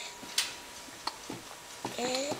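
A few small clicks and mouth smacks as a baby is spoon-fed, a plastic spoon at her lips; the sharpest click comes about half a second in.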